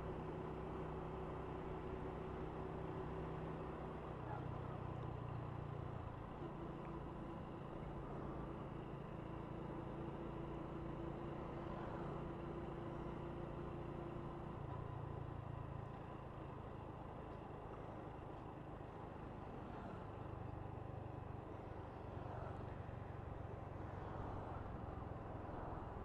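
Honda Wave 125 motorcycle's single-cylinder four-stroke engine running as the bike rides along, with road and wind noise. The engine note shifts in pitch a few times as the speed changes.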